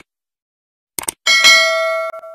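Subscribe-button animation sound effects: a quick mouse click, then about a second in another click pair followed by a bright notification-bell ding, the loudest sound, that rings and fades slowly.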